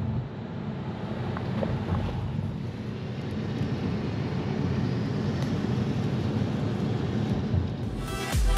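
Steady low road rumble heard inside a moving car's cabin, tyre and engine noise while driving.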